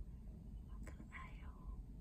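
A person whispering briefly, a breathy voice without spoken tone, just after a single sharp click about a second in, over a faint steady low rumble.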